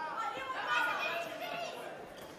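A boxer's cornerman calling out instructions from ringside, heard over background chatter in the venue.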